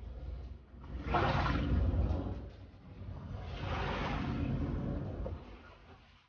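Floodwater being pushed across a hard floor with a long-handled sweeper, in two long swishing strokes.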